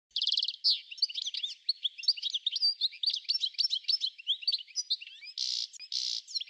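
Songbirds chirping and twittering in a busy chorus of rapid, overlapping high calls, opening with a fast trill, with two short hissy bursts near the end.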